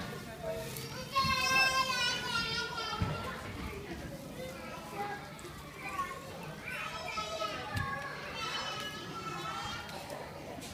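Children's voices: two high, wavering calls, one about a second in and another near the end, over a background of chatter.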